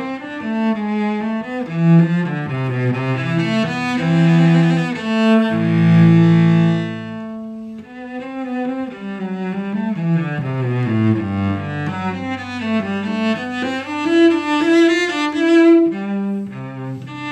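Solo cello played with the bow, a melodic line of moving notes. About five seconds in it holds a long note that fades into a short pause near the middle, then the line picks up again.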